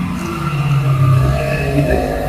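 A motor running with a steady low hum that drops slightly in pitch about half a second in.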